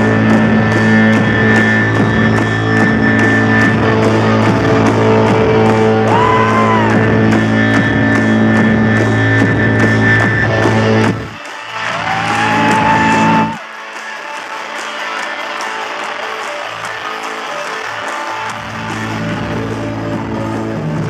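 A rock band playing live, with electric guitar over a driving beat and heavy bass. About eleven seconds in the bass and beat drop away, a tone slides upward, and from about thirteen seconds on the guitar carries on more quietly with no deep bass under it.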